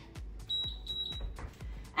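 Gymboss interval timer giving two high-pitched beeps in quick succession, signalling the start of the next work interval, over background workout music with a steady beat.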